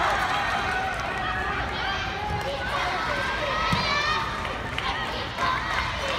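Several high-pitched young girls' voices shouting and calling over one another during a dodgeball game, with a single thud about three and a half seconds in.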